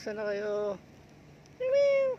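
A cat meows loudly near the end, one drawn-out call that rises slightly and falls away. It follows a lower, level call of about three-quarters of a second at the start.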